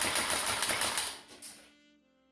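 A custom gas-blowback airsoft AK-15 rifle, an LCT AK converted with GHK internals, firing a rapid full-auto burst of evenly spaced shots. The burst stops about a second in and its echo dies away.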